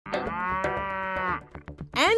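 A dairy cow mooing once, one long call lasting about a second and a half, followed by a few short knocks near the end.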